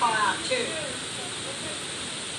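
Heavy rain on a metal building's roof, a steady hiss. Voices talk briefly at the start.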